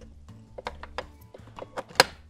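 Light clicks and knocks of plastic and metal parts being handled as the pump mechanism and cover of a Graco Magnum ProX17 airless sprayer are fitted back together, with a sharp loud click at the very end as a part snaps into place. Background music runs underneath.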